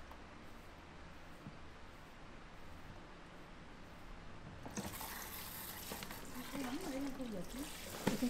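Water starts running from the shampoo basin's tap or sprayer a little past halfway through and keeps splashing and trickling over hair into the basin. A voice is heard faintly under the water near the end.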